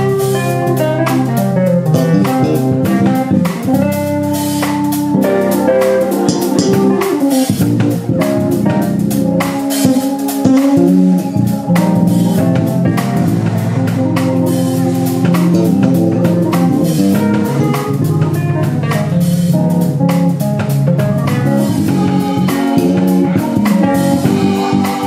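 Live jazz-funk fusion band playing: a Ludwig drum kit, an electric bass guitar and a Nord Stage 3 keyboard together, with busy drum strokes throughout.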